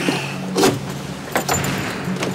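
Soft background music holding low sustained notes, with two short clicks or knocks, one just over half a second in and one at about a second and a half.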